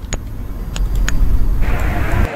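Low, steady rumble of outdoor street noise with a few sharp clicks; a hiss comes up about a second and a half in.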